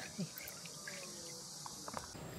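Steady, high-pitched chorus of insects chirring, with a few faint small splashes of a hand dabbing in shallow stream water.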